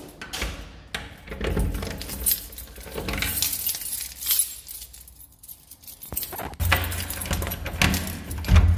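A bunch of keys jangling and clinking, with scattered short clicks, as a key is worked in a door lock to unlock it.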